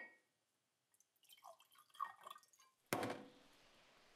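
Spirit poured from a glass bottle into a drinking glass, a string of short glugging, gurgling notes and drips. About three seconds in, a sudden loud hit dies away into a steady outdoor hiss.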